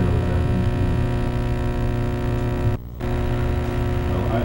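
Steady electrical mains hum and buzz in the audio system, a strong low drone with a stack of steady overtones above it. It cuts out briefly about three seconds in, then returns.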